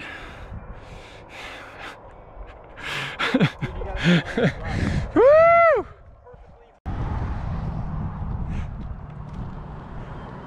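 Men laughing and gasping, with one loud whoop about five seconds in whose pitch rises and falls. After a brief lull, a steady low rumble comes in.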